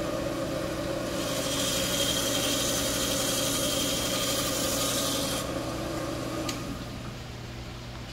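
A small electric power tool's motor runs steadily, and for about four seconds in the middle it grinds against coral rock with a hissing rasp as the base of a coral frag is cleaned up. It winds down about a second before the end.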